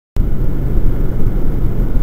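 Motorcycle riding at road speed: a loud, steady rush of engine and wind noise that cuts in abruptly just after the start.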